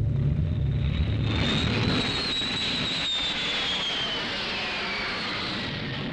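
A jet aircraft passing overhead. A low rumble gives way, about a second in, to a loud roar with a high whine that falls steadily in pitch as the plane goes by.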